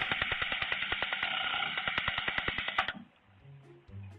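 Motion-activated lawn sprinkler spraying with a rapid, even ticking, heard through a security camera's thin, muffled audio. It cuts off abruptly about three seconds in.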